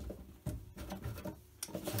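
Faint taps, soft knocks and rubbing as hands press and handle a silicone mold liner seated in its rigid outer shell, with a couple of slightly sharper knocks near the end.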